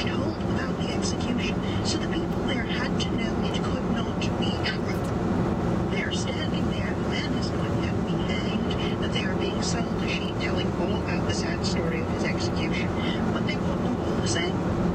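Steady road and tyre noise inside the cabin of a 2011 VW Tiguan SEL cruising at highway speed. The owner suspects its 18-inch wheels and low-profile 50-series tyres make it noisier. Talk from the car's audio runs underneath.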